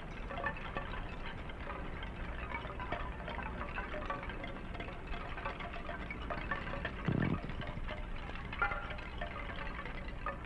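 Chimes tinkling in a light, irregular scatter of short high notes, with one brief low sound about seven seconds in.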